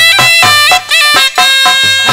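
Clarinet playing a short folk phrase repeated about twice a second over dholak drum beats, in an instrumental break between sung verses.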